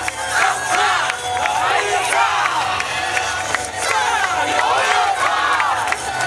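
A yosakoi dance team shouting calls together in rising-and-falling cries over dance music, with sharp clicks of naruko wooden clappers.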